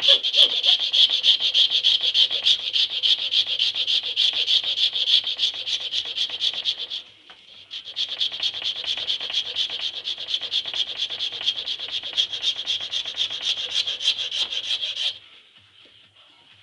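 A flat file rasping in rapid back-and-forth strokes across a Burmese blackwood grip blank clamped in a vise. The strokes pause for about a second midway, resume, and stop shortly before the end.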